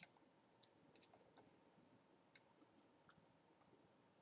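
Faint computer mouse clicks, about seven scattered over a few seconds, over near-silent room tone.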